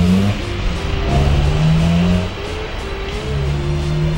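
Car engine revving up as the car pulls away, its pitch rising at the start and then running steadily, under background music.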